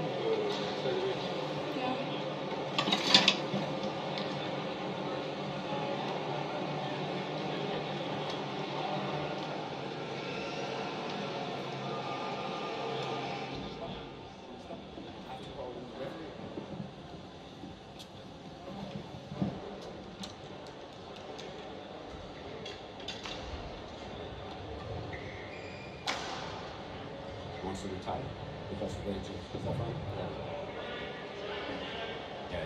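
Indistinct talking away from the microphone over the steady hum of a large indoor sports hall, with a few sharp knocks, the loudest about three seconds in. The hum drops quieter about fourteen seconds in.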